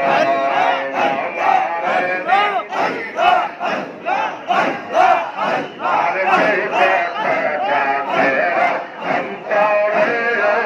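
A large crowd of men chanting Sufi zikir together, repeating a short call over and over in a fast, steady rhythm, each call rising and falling in pitch.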